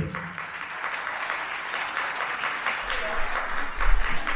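Audience applauding: many hands clapping in a steady patter, after a speaker's thanks.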